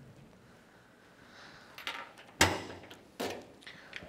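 Trunk lid of a 1971 Chevrolet Chevelle SS being unlatched and lifted open: a few short clunks and clicks, the loudest about two and a half seconds in.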